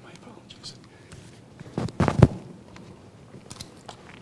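Microphone handling noise while the microphone is being adjusted: scattered clicks and rubbing, with a cluster of loud low bumps about two seconds in, under faint low voices.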